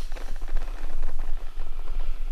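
Dense crackling rustle of clothing moving close to the microphone, over a steady low hum.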